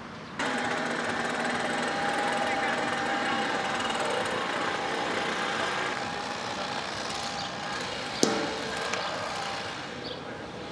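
A motor running steadily with a droning hum that starts abruptly and eases off after about six seconds, and a single sharp crack about eight seconds in.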